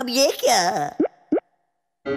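A cartoon character's voice calls out briefly, followed by two quick rising pop sound effects about a third of a second apart, then the sound cuts off suddenly to silence.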